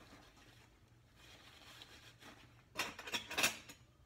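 Objects being handled on a kitchen counter: a faint rustling from about a second in, then a brief cluster of louder knocks and rustles about three seconds in.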